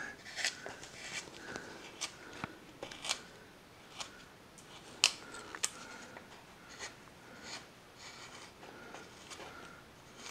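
A No. 7 carving gouge pushed by hand through wood, taking off chips: irregular short scrapes and clicks, about a dozen of them, the sharpest about five seconds in.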